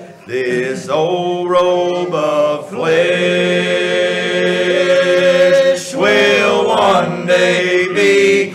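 A group of men singing together in a church, one long note held for about three seconds in the middle.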